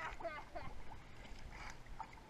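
A dog in a plastic kiddie pool, nosing and pawing at the water, making faint sloshing and splashing. A short voice sound comes right at the start.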